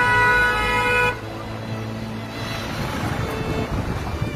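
A car horn held on one steady note, cutting off about a second in, then the general noise of road traffic.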